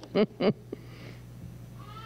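A woman laughing into a microphone: the last short, evenly spaced 'ha-ha' pulses of a laugh, ending about half a second in, over a steady low hum. A faint drawn-out voice sound comes near the end.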